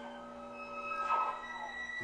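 Quiet film score of held, sustained tones, with a few notes shifting to new pitches partway through.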